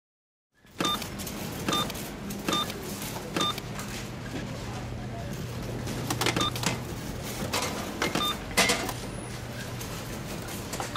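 Supermarket checkout barcode scanner beeping as items are scanned: six short beeps at uneven intervals, among the knocks of groceries set down on the counter, over a steady low hum.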